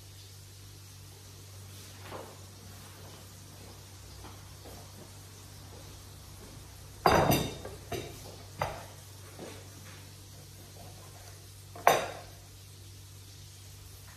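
A few sharp knocks of a knife and wooden cutting board on a table as a lemon is cut, the two loudest about seven and twelve seconds in, over a steady low hum.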